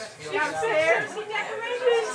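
Indistinct chatter of several people talking over one another.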